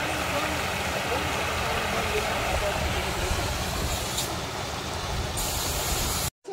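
Water spilling over a small concrete drop in a channel, a steady splashing rush with a little more hiss near the end.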